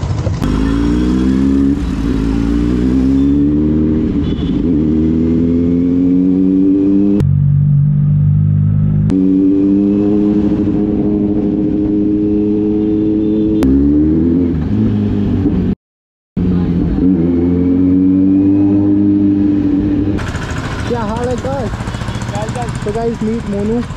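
Kawasaki Z900's inline-four engine pulling hard through the gears: its pitch climbs steadily in each gear and drops back at each upshift, several times over. The sound cuts out briefly about three-quarters of the way through, and a voice comes in near the end.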